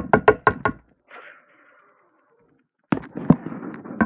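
Small plastic toy figure knocked quickly against a desk top, about six sharp taps in the first second as it is walked along. After a short lull, more knocks and rustling handling noise near the end.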